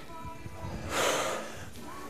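A person's forceful breath out, a hiss of air lasting about half a second around the middle, from the effort of swinging a kettlebell, over quiet background music.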